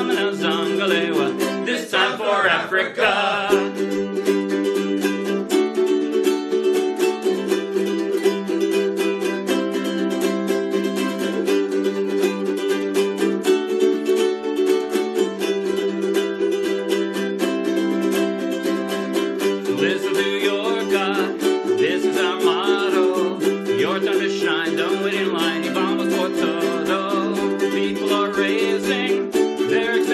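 Several ukuleles strummed together, playing chords in a steady rhythm.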